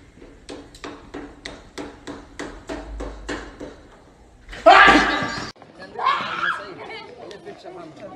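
A dozen or so sharp clicks at an even pace of about four a second, then a sudden loud yell lasting about a second, with shorter voice sounds after it.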